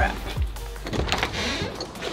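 Background music with a steady low beat, about one beat every 0.6 seconds, and a brief swishing noise about a second in.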